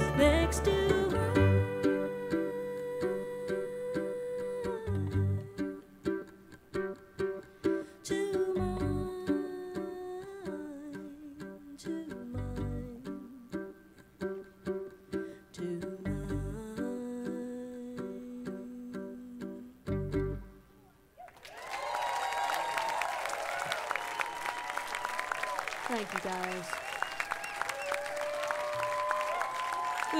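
A bluegrass string band, with fiddle, banjo, guitars and upright bass, plays the slow closing bars of a song: long held notes over sparse plucked notes, and a deep bass note every few seconds. The music stops about two-thirds of the way through, and the audience breaks into applause and cheers.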